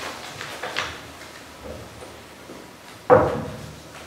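Quiet room tone with faint paper handling, then a single sharp knock about three seconds in that dies away over half a second.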